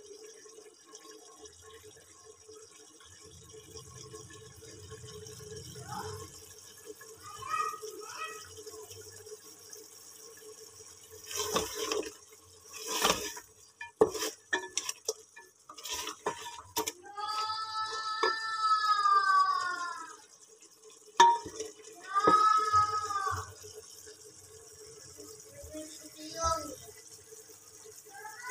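Mutton frying and bubbling in oil and its own juices in a metal pot while it is stirred with a wooden spatula. The spatula knocks and scrapes against the pot several times in the middle. A high voice calls out twice near the end, louder than the cooking.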